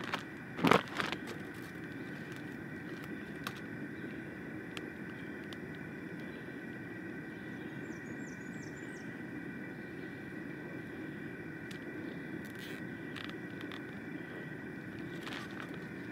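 Plastic shrink bag holding a chicken being twisted shut and closed with a small nylon zip tie: scattered faint crinkles and clicks over a steady low background hum, with one loud knock about a second in as the bag is handled on the table.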